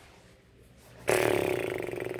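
A person's raspy breath out, like a sigh, starting suddenly about a second in and slowly tapering off.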